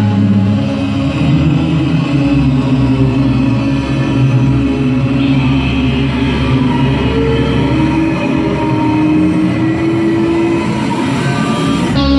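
Recorded orchestral intro of dramatic strings holding long, sustained, ominous chords over a low drone.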